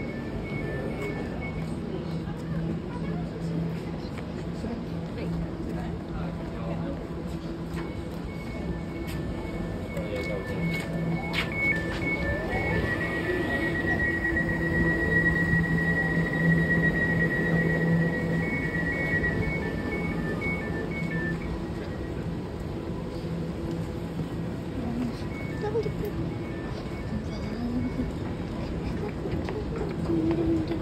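Platform ambience beside a standing Elizabeth line Class 345 train: a steady low hum, indistinct voices, and a repeating high electronic beep that stops for several seconds and then returns.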